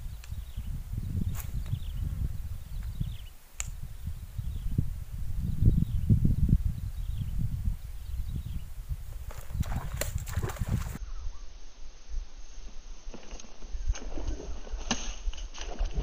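Wind rumbling on the microphone, with a few sharp clicks. About eleven seconds in, the sound turns thinner, with irregular clicks and water splashing as a hooked snakehead thrashes at the surface.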